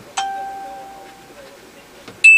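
A single bell-like chime that rings out from a sharp start and fades away over about a second.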